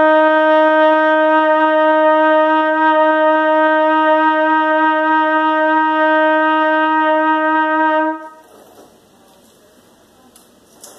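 A 1955 Conn 22B Victor trumpet, played with a Jet-Tone Symphony Model C mouthpiece, holding one long steady note as a warm-up. The note cuts off about eight seconds in.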